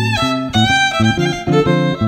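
Violin and archtop jazz guitar playing swing music, the violin carrying the lead line over the guitar's accompaniment.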